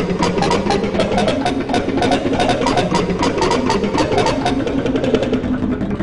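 Heavily distorted, layered logo audio: a fast stuttering rattle over steady low buzzing tones that sound engine-like, with faint jingle notes running through it.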